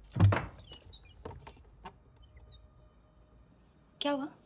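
A wooden front door being unlatched and opened: one loud clunk about a quarter-second in, then a few lighter clicks and rattles over the next second and a half.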